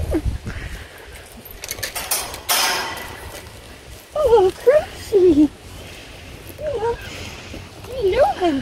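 A woman calling to an approaching horse in a high, sing-song voice: a few short calls that swoop up and down about four seconds in, and one more shortly before the end. A brief burst of rustling noise comes about two seconds in.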